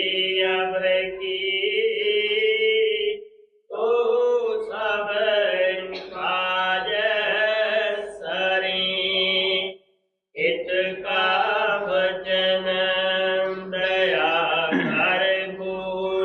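A voice singing lines of a devotional hymn (shabd) in a slow chanting style, with long held notes. The singing breaks off twice for breath, about three and a half and ten seconds in.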